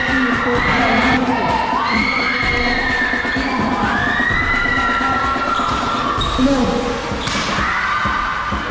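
Basketball game on an indoor court: a ball bouncing on the floor under steady crowd noise, with spectators shouting long, drawn-out calls and cheers.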